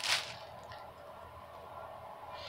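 Clothing and packaging being handled: a brief rustle at the start that dies away into faint handling sounds with a few light ticks.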